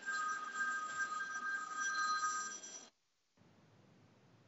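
An electronic telephone ringing: two steady high tones held together for nearly three seconds, then cut off suddenly.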